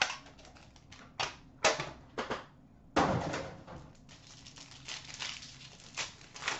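Hands handling a hockey card box and its hard case: several sharp clacks and knocks in the first three seconds, the loudest about three seconds in. Then plastic wrap crinkles as a sealed pack of cards is pulled open.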